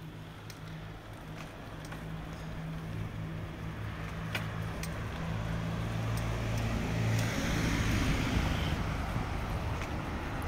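A road vehicle's engine running with a low steady hum, growing gradually louder over the several seconds, with road noise building near the end.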